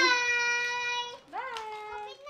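A young child's high voice calling out two long, drawn-out notes, each sliding up at the start and then held, growing fainter.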